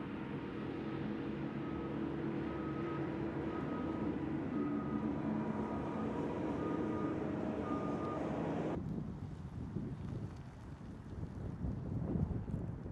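Ford Fusion Energi Special Service plug-in hybrid sedan driving slowly: a steady hum with a short high beep repeating about every two-thirds of a second. About nine seconds in the sound cuts sharply to wind on the microphone and the low rumble of the car moving off.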